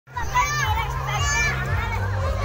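Children playing: high-pitched calls and shouts of young kids, twice in quick succession, over a low steady hum.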